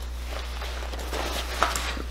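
Soft rustling of a fanny pack's fabric strap being pulled over the head and onto the shoulder, with a faint click about a second and a half in, over a steady low hum.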